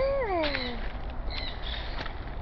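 Blue-and-gold macaw giving one call that rises briefly and then slides down in pitch, lasting under a second. A short high chirp follows about a second and a half in.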